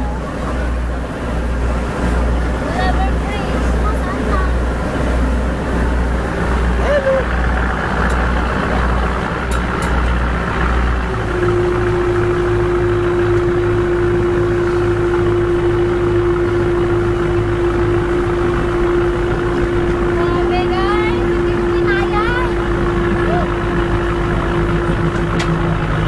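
A boat's engine running: a low pulsing beat gives way about eleven seconds in to a steady drone. People's voices can be heard in the background.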